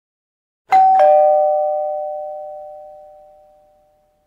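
Electronic two-tone "ding-dong" doorbell chime: a higher note, then a lower note a third of a second later, both ringing and fading away over about three seconds.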